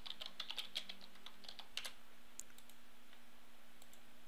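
Computer keyboard being typed on, a quick run of keystroke clicks through the first two seconds, then only a faint steady hum.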